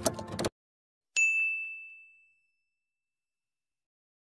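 A single bright ding, a logo-intro chime sound effect, struck once about a second in and ringing out as it fades over about a second. Just before it, a busy intro sound effect cuts off abruptly half a second in.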